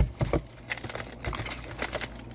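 Thick frost being broken and flaked off a boat refrigerator's aluminum evaporator plate by hand: scattered crackles and crinkly snaps, the sharpest right at the start. The ice build-up is thick enough that the plate is due for defrosting.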